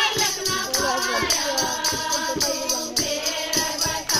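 A group of women singing a Haryanvi devotional bhajan together in unison, kept in time by steady hand-clapping at about three claps a second.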